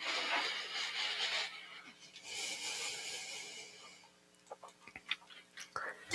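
A person breathing close to the microphone: two long, soft breaths, followed by a few faint clicks near the end.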